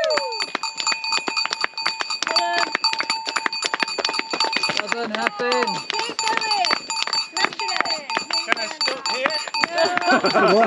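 A cowbell rung continuously with rapid strikes, its ringing tone held steady underneath. A few brief calls from voices come through, the clearest about halfway through.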